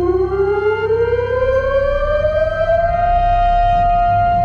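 Israeli nationwide memorial siren, a civil-defence siren, winding up from a low pitch and rising for about three seconds before settling into one long steady tone, sounding the standing moment of silence for the fallen of Israel's wars. Soft background music plays under it.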